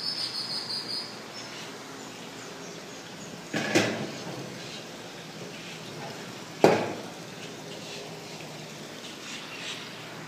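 A high, thin insect-like chirping tone for about the first second, then two sharp knocks about three seconds apart, the second louder, over a steady low background hum.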